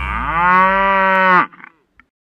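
A cow mooing once: one long call that rises in pitch at the start, then holds steady and cuts off about a second and a half in.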